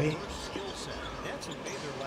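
A basketball being dribbled on a hardwood arena court, heard through the game broadcast's sound with a faint commentator's voice and crowd in the background.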